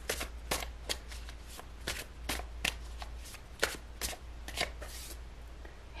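Tarot cards being shuffled by hand: a string of crisp, irregular card flicks, a few each second, that stop shortly before the end.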